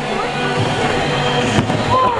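Background music with a steady tone pattern under gym crowd noise, and a sharp thud about one and a half seconds in: a person landing on a gym mat after a standing full twist attempt.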